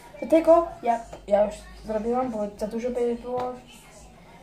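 A girl talking; the words are not made out.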